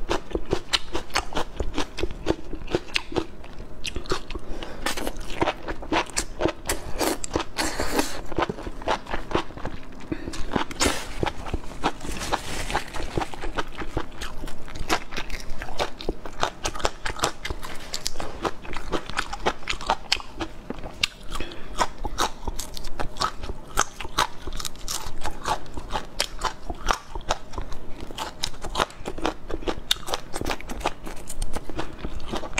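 Close-miked eating sounds: steady wet chewing with many small crisp bites and crackles, as raw red chili peppers and chili-coated enoki mushrooms are bitten and chewed.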